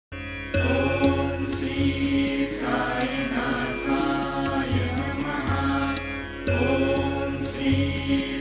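Devotional music: a mantra chanted over a steady drone with a low pulse, the phrase coming round about every six seconds.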